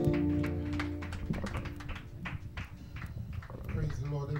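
A church keyboard holds a chord that fades away over about the first two seconds, with the congregation's voices and some scattered noise beneath and after it.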